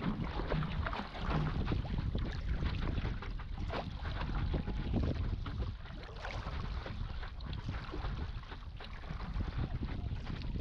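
Water splashing and washing in the wake behind a moving stand-up paddleboard, in short irregular splashes, with wind rumbling on the microphone.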